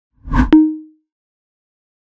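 Logo sound effect: a quick rising swell of noise, then a sharp pop with a short pitched ring that fades within half a second.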